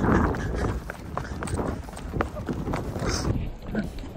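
Running footsteps thudding irregularly on soft beach sand, with wind rumbling on the microphone.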